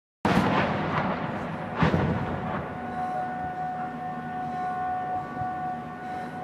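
Mortar rounds exploding: a loud blast as the sound begins, slowly dying away, and a second blast about a second and a half later. After that a steady humming tone holds.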